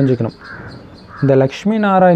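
A man's voice talking, with a crow cawing twice, faintly, in the short pause in the middle.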